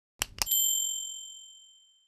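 Subscribe-button animation sound effect: two quick mouse clicks, then a bright, high notification-bell ding that rings out and fades away over about a second and a half.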